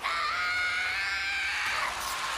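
A long, unbroken high-pitched scream from the anime's soundtrack, held for most of two seconds and rising slightly in pitch.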